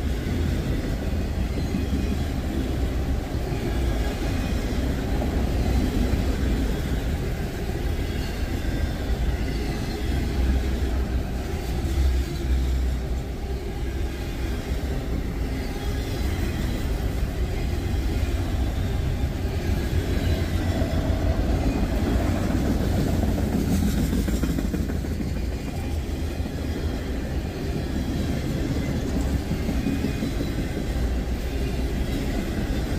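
Freight train of autorack cars rolling steadily past, a continuous rumble of steel wheels on the rails.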